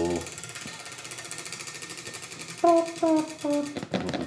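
Prize wheel spinning, its pegs ticking rapidly against the pointer, the ticks spreading out as the wheel slows.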